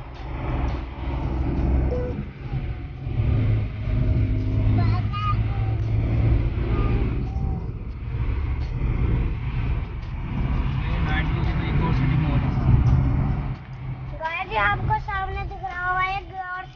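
Road noise inside a moving car: a steady low rumble of engine and tyres while driving, with faint voices over it and a voice coming up clearly near the end.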